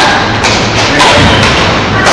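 Two sharp knocks about half a second apart over hall noise, from a badminton rally: racket strikes on the shuttlecock and players' feet thudding on the court.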